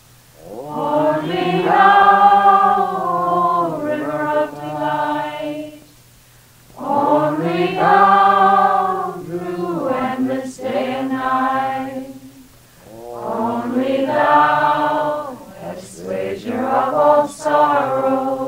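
Devotional chanting by voices in unison: three long phrases, each several seconds long, with short pauses between them, over a steady low drone.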